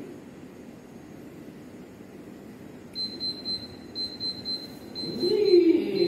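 Quiet room hiss, then about halfway through a thin, high-pitched electronic tone comes on, broken into short beeps. A voice starts up near the end.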